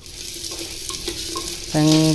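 Sliced onions sizzling in hot oil in an earthen clay pot while a spoon stirs them. The hiss runs steadily, and a voice comes in near the end.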